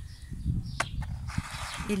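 Low, uneven rumble with light knocks, a single sharp click about a second in and a short rustle, then a woman starts speaking right at the end.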